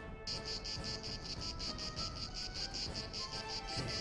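Crickets chirping in a fast, even pulse that starts a moment in, over soft sustained background music.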